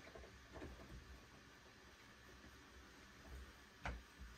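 Near silence: room tone with faint clicks of bow-vise parts being handled, one a little louder shortly before the end.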